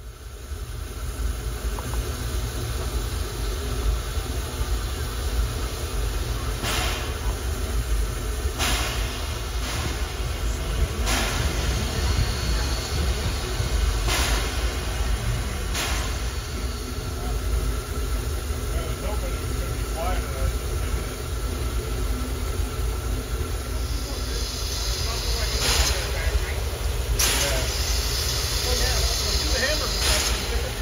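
A 1907 Baldwin narrow-gauge steam locomotive working slowly, over a steady low rumble. Sharp exhaust chuffs come every couple of seconds, and a hiss of steam builds in the last few seconds.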